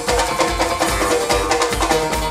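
A live bluegrass-style rock band playing an instrumental stretch: strummed acoustic guitar, upright double bass and a drum kit keeping a steady beat.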